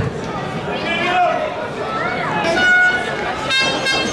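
Shouted calls from players and spectators at an outdoor football match, short calls rising and falling in pitch, with one held call about two and a half seconds in, over steady background crowd noise.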